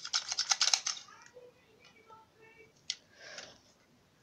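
A red plastic toy crab claw snapping, a rapid run of sharp plastic clacks through the first second, then one more single click about three seconds in.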